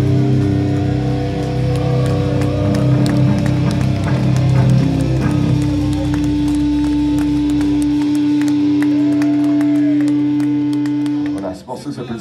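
Distorted electric guitars and bass guitar holding a final sustained chord as a heavy metal song ends. The lowest notes stop about eight seconds in, and a single held guitar note rings on until it cuts off just before the end.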